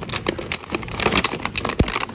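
Plastic clamshell pack of kiwis crinkling and clicking as it is handled and pulled from a store shelf, with a dull thump near the end.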